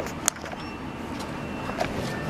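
Steady outdoor street background noise, with two short sharp clicks near the start as someone steps through a shop doorway.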